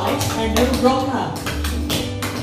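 Clogging shoes tapping out dance steps over a recorded song with a singing voice and instrumental backing.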